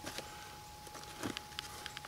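Quiet handling of a saw in a plastic blister pack with gloved hands: a few faint, scattered clicks and light rustles as the package is turned.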